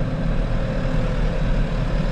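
Case IH tractor's diesel engine running steadily, heard from inside the cab as a low rumble with a faint steady whine above it.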